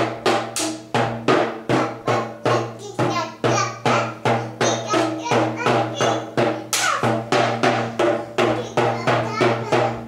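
Child's toy drum with a white drumhead and red rim beaten with a stick in a steady run of sharp hits, about three a second.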